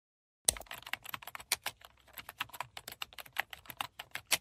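Computer keyboard typing: a quick, uneven run of key clicks that starts about half a second in and keeps going.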